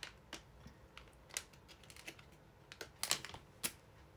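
A few light, sharp clicks and crinkles of a plastic snack package being handled, scattered and irregular, the loudest two close together about three seconds in.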